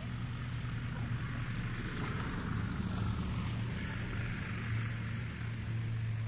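A fast-flowing river rushing steadily, with a constant low motor-like hum underneath.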